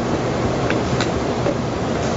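Steady rushing background noise of a working commercial kitchen, with two faint light clicks about a second in.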